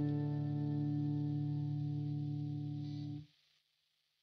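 Electric guitar on its neck single-coil pickup, played through the Pod HD 500's Tube Comp compressor model into a crunch amp model, with a held chord ringing out and sustained by the compressor. It cuts off abruptly a little after three seconds in.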